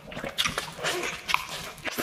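Close-miked chewing of a mouthful of cheeseburger: irregular short clicks and smacks of the mouth.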